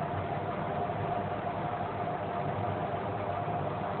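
Steady hum and hiss of background noise, even throughout, with a faint steady tone running through it.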